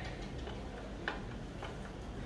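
A few light, irregular metal ticks from a screwdriver turning a screw in a concealed cabinet-door hinge, the loudest about a second in.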